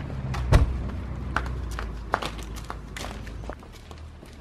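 A single heavy thump about half a second in, followed by a series of footsteps.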